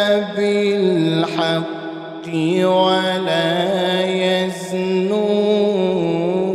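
A man reciting the Quran in the melodic tilawah style, holding long, ornamented, slowly shifting notes. The voice falls briefly quieter about two seconds in.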